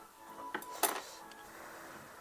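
Chopsticks clinking against tableware while eating from a hotpot: two sharp clinks close together about half a second in, the second louder, then a faint tick.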